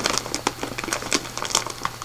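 Plastic snack bag of Takis chips crinkling as it is handled, a string of small irregular crackles.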